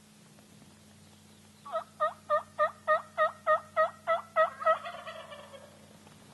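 Turkey yelping: a run of about eleven evenly spaced two-note yelps, roughly three a second, that starts nearly two seconds in and ends in a fainter trailing run.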